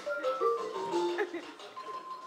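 Electronic keyboard played by two people at once: a simple melody of short, steady notes stepping mostly downward.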